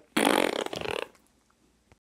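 A fart noise lasting about a second, rough and fluttering.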